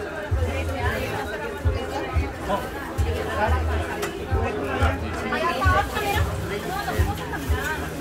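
Party chatter, several people talking at once, over background music with a steady bass beat.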